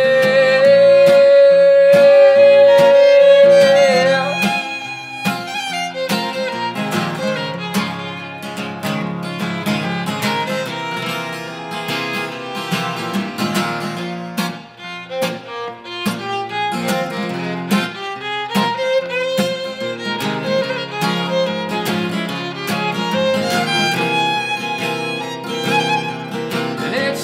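Fiddle and acoustic guitar playing an instrumental break in a folk-country song. A long held note opens it, and after about four seconds the fiddle plays a run of quick short notes over the guitar's accompaniment.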